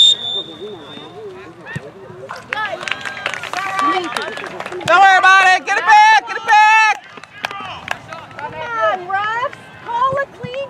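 A referee's whistle blows one short, high blast right at the start. Spectators then shout loudly from the sideline, loudest from about five to seven seconds in.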